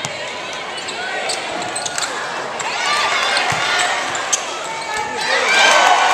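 Basketball game on a hardwood court: sneakers squeaking in short chirps as players cut, a ball bouncing, and players' and spectators' voices in a large hall, loudest near the end.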